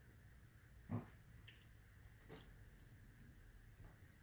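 Near silence: room tone, with one brief faint sound about a second in.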